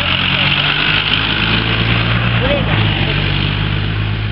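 An engine running steadily at a constant pitch, under a steady high hiss.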